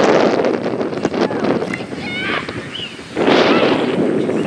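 Wind buffeting the camera microphone in gusts, strongest at the start and again near the end. In the lull about two seconds in there are distant high-pitched voices calling across the field.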